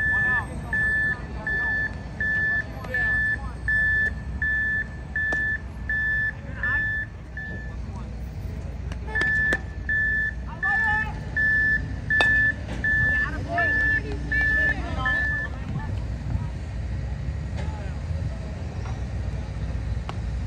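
Vehicle backup alarm beeping in one steady tone, about one and a half beeps a second. It stops about eight seconds in and starts again a second later for another six seconds.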